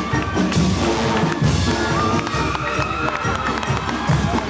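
Band music with drums playing.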